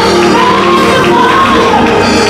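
Live gospel praise singing: a woman's voice holds a loud, high note that bends up and down in pitch over band accompaniment.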